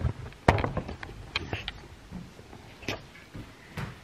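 A few sharp knocks and clicks, the loudest about half a second in, from a camera being handled and set down.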